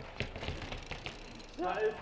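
Enduro mountain bike being wheelied up concrete steps: a handful of short sharp clicks and knocks from the bike spread over the first second and a half.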